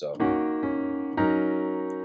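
Piano chords in drop-2 voicing: an inverted E-flat minor 7, the two chord, is struck and held, then a second chord is struck about a second in and rings on.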